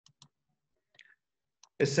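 A few faint, sharp computer mouse clicks, scattered over about a second and a half.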